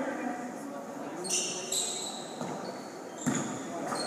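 Basketball gym sound during play: sneakers squeak on the hardwood floor about a second in, then a single thud a little before the end, over a murmur of spectators' voices in the hall.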